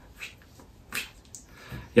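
Quiet, breathy laughter: a few short huffs of breath.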